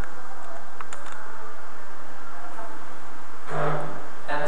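Steady hiss of recording noise from the narrator's microphone, with a couple of faint clicks about a second in and a voice starting to speak near the end.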